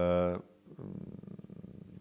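A man's voice hesitating between words: a briefly held vowel, then from about half a second in a low, creaky, rattling drone of vocal fry.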